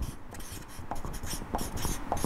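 Rustling and rubbing with many small irregular clicks: handling noise of fabric and hands moving near a clip-on microphone.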